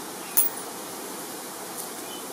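Steady wind noise buffeting the camera's microphone, with one short sharp click about half a second in.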